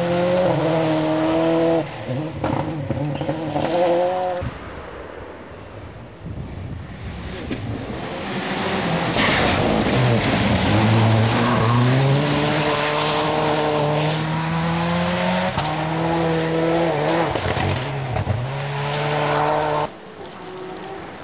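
Rally cars driven hard on a gravel stage, one after another: engines revving up and dropping back through gear changes. About nine seconds in, a loud spray of gravel and tyre noise comes as a car passes close.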